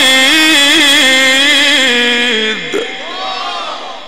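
A male Quran reciter, amplified through a microphone, holds a long, ornamented melismatic note in Egyptian tajwid style, then lets the pitch drop away about two and a half seconds in. Near the end, several listeners call out in approval.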